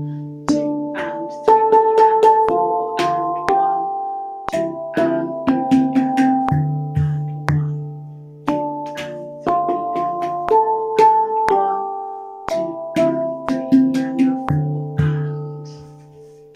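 RAV Vast handpan played with alternating hands in a steady pulse, each beat split differently: one stroke, then two, then four quick strokes, then two. The ringing pitched notes sit over a low bass note, and the last note rings out near the end.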